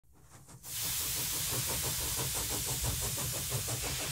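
Steam hissing, coming in quickly about half a second in and then holding steady, with a fast, even pulsing running through it.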